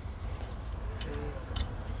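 Faint, indistinct voices over a steady low rumble, with no clear sound event of its own.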